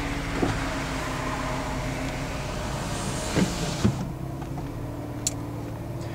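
Electric convertible top of a Porsche 996 Cabriolet whirring as it closes, cutting off about four seconds in with a couple of clunks as it finishes. Under it the car's 3.6-litre flat-six engine idles steadily.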